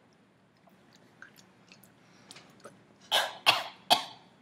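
A person coughing: three short, harsh coughs near the end, after a few faint mouth clicks. The coughing comes from having just swallowed dry, bitter loose tea leaves.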